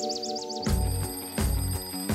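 Twin-bell alarm clock going off: a sudden, continuous metallic ringing that starts about two-thirds of a second in.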